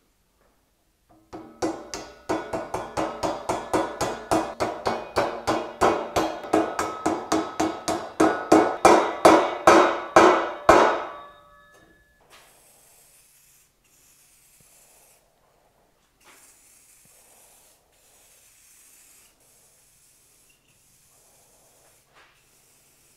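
Rapid hammer blows on a welded steel square-tube table-leg frame, about four a second for some ten seconds, each with a short metallic ring, growing louder toward the end. After that, quiet short hisses of aerosol spray paint start and stop.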